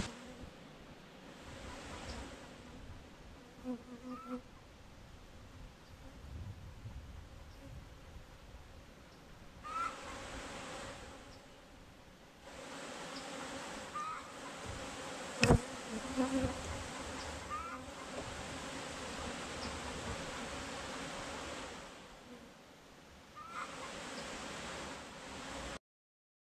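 Honeybees buzzing around an open hive: a steady low hum, with single bees whining past the microphone now and then in short rising tones. A metal hive tool scrapes wax from the hive box, and a single sharp knock comes about fifteen seconds in.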